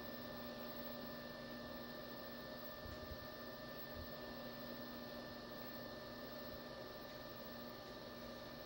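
Steady hum and hiss of running endoscopy equipment (video processor, light source and monitor), with a few steady tones held throughout and a couple of faint soft thumps.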